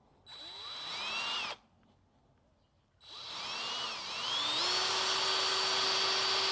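Handheld power drill turning a 1/16-inch bit into the base of a Holley 94 carburetor, starting a divot for a hole to be drilled straight down. There are two runs: a short one that speeds up, then after a pause of about a second and a half a longer one that speeds up and holds a steady whine.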